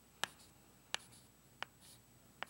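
Chalk writing on a chalkboard, faint: three sharp taps about two-thirds of a second apart as the chalk strikes the board, with light scratching between them.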